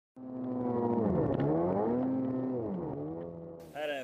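An engine revving, its pitch dipping and climbing back up twice, then cutting off suddenly just before a man starts talking.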